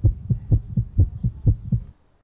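A rapid run of low, heartbeat-like thumps, about four a second, that cuts off suddenly near the end.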